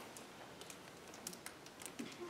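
A quiet room with a few faint, light clicks and ticks scattered through it.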